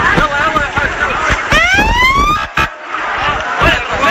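A siren whoop: one rising pitched tone, about a second long, starting about a second and a half in, over ongoing talk.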